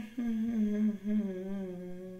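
A man humming in a low, nearly level voice: three held notes with short breaks between them, the last sagging slightly in pitch.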